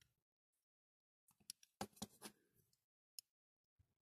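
Faint clicks and scrapes of a small metal pick prying at parts in the nose of a die-cast model car body: a short cluster about a second and a half in, then a single click near the end.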